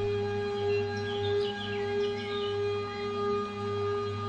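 Meditation music tuned to 432 Hz: a steady drone that sounds like a singing bowl, with a low hum beneath. Short high chirps slide up and down from about half a second to three seconds in.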